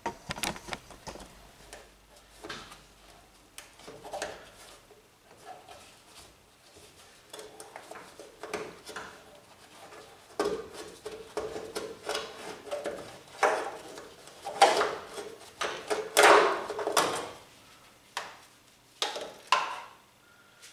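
Irregular clicks, knocks and metallic clatter of hand work at a car door's hinges and fittings as the door is being removed, with a few louder clunks in the second half.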